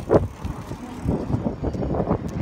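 Wind buffeting a handheld phone's microphone on a moving bicycle, with knocks from the phone being handled. Two sharp bumps come right at the start, then a run of irregular low thumps.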